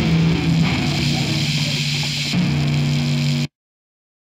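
Distorted electric guitar over a thrash metal recording, with a note sliding down in pitch near the start and a low chord held before the sound cuts off abruptly about three and a half seconds in.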